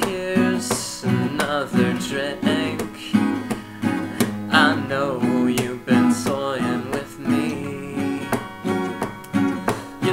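Two acoustic guitars strummed together in a steady rhythm, a natural-finish dreadnought and a black cutaway acoustic with a capo, with a voice singing over them.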